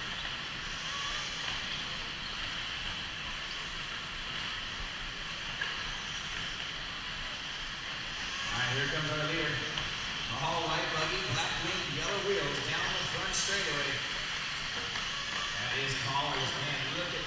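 Steady hiss of 1/8-scale electric RC buggies racing around an indoor dirt track, heard in a large echoing hall. From about halfway through, a reverberant race announcer's voice comes over the PA.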